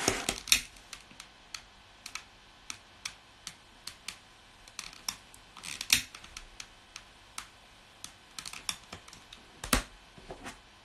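Irregular light clicks and taps, a few a second, as a glass jar candle is handled on a wooden tabletop and lit, with a few sharper knocks among them.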